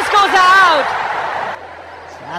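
Football commentator's drawn-out, excited shout over loud stadium crowd noise during an attacking chance; the crowd noise cuts off suddenly about a second and a half in.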